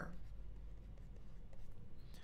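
Faint scratching of a stylus writing by hand on a tablet, over a steady low hum.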